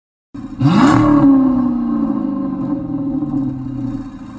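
A car engine revving once: the pitch climbs sharply about half a second in, then sinks slowly as the revs fall away. A brief hiss comes with the climb.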